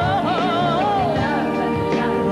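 A woman singing solo with a wide vibrato, holding and bending sustained notes with no clear words, over a band accompaniment.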